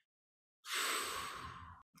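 A man's long, breathy sigh: an exhale that starts about half a second in and fades away over about a second.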